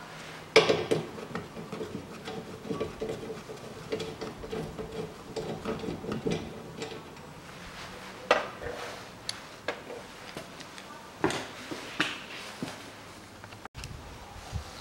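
Light metallic clinks and knocks of hand tools and small parts being handled at the windscreen wiper arms during wiper removal. A sharp click comes about half a second in, small clinks follow for several seconds, and a few separate knocks come later.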